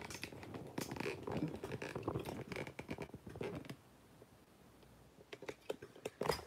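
Irregular clicks, scrapes and knocks of handling close to the phone's microphone, busy for the first few seconds, dying down about four seconds in, with a few more clicks near the end.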